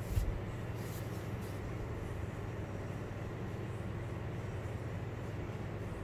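Steady low mechanical hum of background machinery or ventilation, with a single low thump just after the start and a few faint clicks about a second in.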